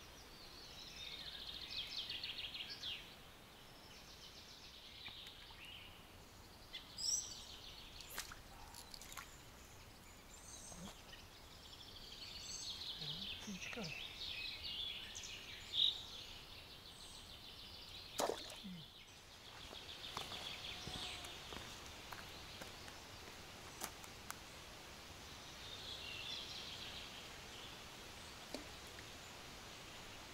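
Songbirds singing in repeated high-pitched trills over a quiet outdoor background, with a few sharp clicks in the middle.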